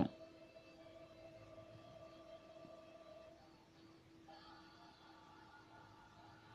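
A quiet room with a faint steady hum of a few tones, and a few higher tones joining about four seconds in.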